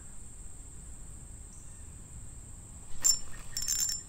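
Spinning reel worked just after a cast: about three seconds in, a sharp metallic click with a brief ringing, followed near the end by a short cluster of small metallic clicks as the reel is engaged and begins to turn.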